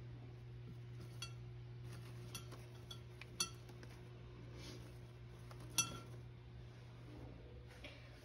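A few faint clinks and taps of wire-stemmed artificial maple leaves knocking against a ceramic container as they are arranged, each with a short ring; the two sharpest come about three and a half and six seconds in. A steady low hum runs underneath.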